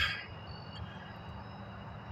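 Steady low background rumble with a few faint, steady high-pitched tones above it, after a short breath at the very start.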